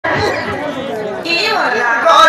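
Speech and chatter: several voices talking over one another.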